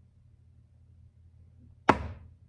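Faint low room hum, then a single sharp impact near the end, loud and sudden, with a brief ring-down after it.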